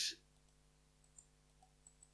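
Near silence after the tail of a spoken word, with one faint computer mouse click about a second in.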